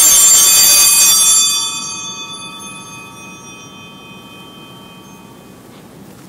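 Altar bells rung at the elevation of the chalice during the consecration: a bright, many-toned ringing, loud for the first second or so, then dying away slowly over several seconds.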